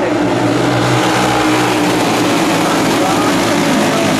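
A pack of racing karts running together around a dirt oval, their many engines blending into a steady, loud drone under throttle.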